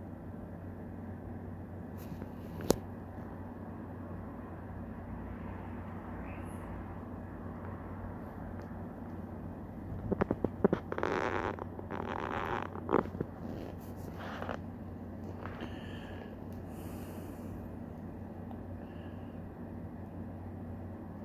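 Steady low hum of room tone. A sharp click comes about three seconds in, and a burst of rustling and clicking noises lasts about three seconds around the middle.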